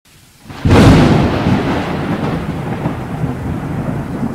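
Thunder and rain: a sudden loud thunderclap about half a second in, followed by a long low rumble with a steady hiss of rain.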